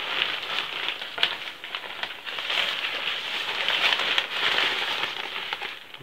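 Tent fabric rustling and crinkling steadily with many small crackles as the new Vango Helvellyn 200's packed flysheet is handled, pulled from its bag and unfolded.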